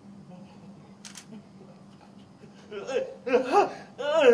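A woman wailing and sobbing in high, wavering cries, starting about three seconds in after quiet room tone with a single click.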